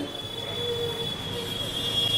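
A steady high-pitched whine over a low background hubbub, with a faint short tone about half a second in.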